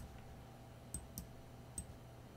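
A few short, sharp clicks of a computer mouse, about four in two seconds, over a faint steady hum.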